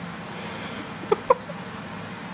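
Two short, high chirp-like vocal sounds, about a fifth of a second apart, a little past one second in, over a steady background hiss.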